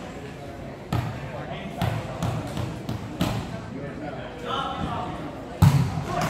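Volleyball bounced a few times on a hardwood gym floor, then a louder sharp slap near the end as the ball is struck on the serve.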